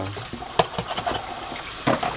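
Kitchen tap running into a sink while a pot of soapy water is scrubbed, with two sharp knocks, about half a second in and near the end.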